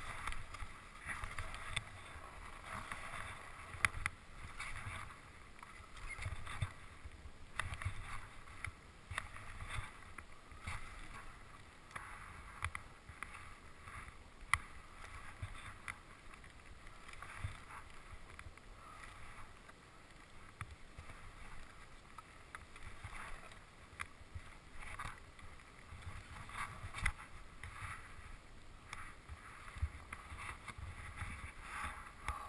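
Skis sliding over snow, an uneven hissing scrape that swells and fades with the turns, with low wind rumble on the microphone and occasional sharp clicks.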